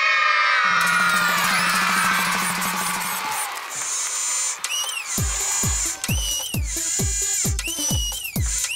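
A group of young children cheering and shouting together, fading out over the first three seconds, with a buzzing hum beneath. Then the intro of an electronic song begins, with robotic beeping sweeps and, about five seconds in, a deep kick drum beating about twice a second.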